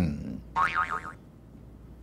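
The end of a man's spoken sentence, then a short, faint warbling tone whose pitch wobbles rapidly up and down for about half a second, much like a boing sound effect. After it comes low room tone.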